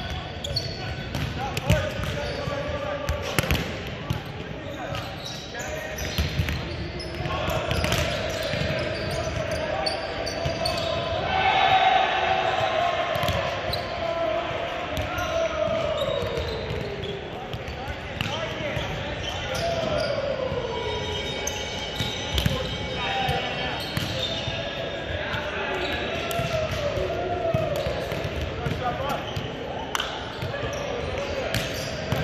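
Volleyballs being struck and bouncing off a hardwood gym floor: irregular sharp slaps and thuds echoing around a large gym, over a steady chatter of players' voices.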